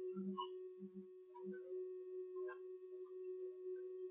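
Faint, steady hum of a tape recorder: one held tone with fainter tones above it. A few soft, low blips come in the first second and a half.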